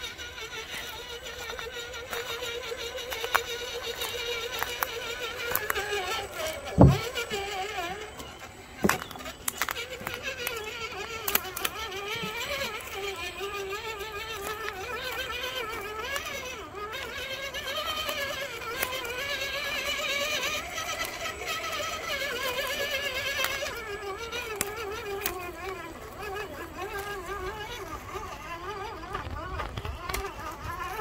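Electric motor and gear whine of an RC4WD Gelande II 1:10 scale RC crawler, rising and falling in pitch with the throttle as it drives. A sharp knock about seven seconds in.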